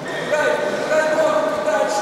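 A person shouting, a loud drawn-out call lasting over a second, in a large echoing hall.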